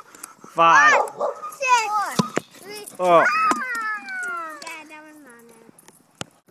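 A dog barking and yelping in high, excited cries that bend up and down, ending in a long falling whine. About two seconds in comes one short pop, the water-bottle air rocket coming off its PVC launcher in a failed launch.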